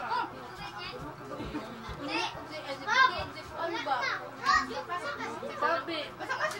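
Children's voices and people talking over one another, with a loud high-pitched child's call about three seconds in.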